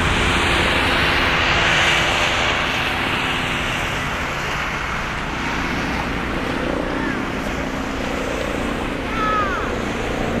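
Boeing 747-400's four jet engines at takeoff power as it climbs out, a loud, steady rushing roar that peaks about two seconds in and then slowly fades as the aircraft gains height.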